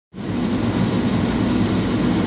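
Car engine running, a steady low hum heard from inside the cabin.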